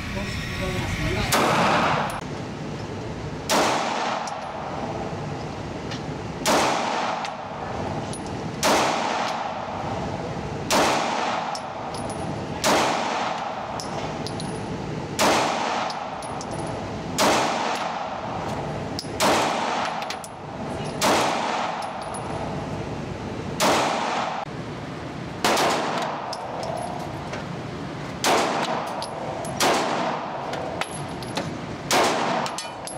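9mm pocket pistols, an FN Reflex and then a Springfield Hellcat, fired in slow single shots at an indoor range: about fourteen shots, roughly two seconds apart, each ringing out in the range's echo.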